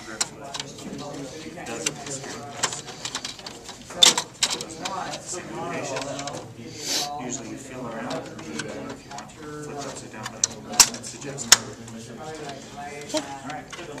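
Plastic printer cover panel being pressed and clicked back into place, with several sharp plastic clicks and knocks, the loudest about four seconds in and two close together near the end, over low background talk.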